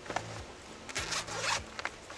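A backpack's zipper is pulled open in a few quick strokes about halfway through.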